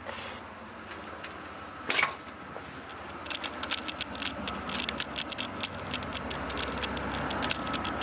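Handling noise on the camera microphone and rustling of a nylon puffer jacket while walking, with one sharp thump about two seconds in. From about three seconds in comes a dense run of small irregular clicks and scrapes.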